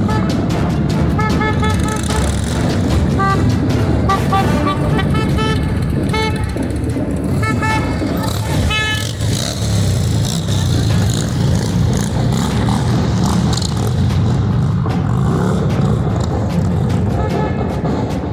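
Touring motorcycles riding past in a parade column, engines rumbling, with repeated short horn toots through roughly the first half.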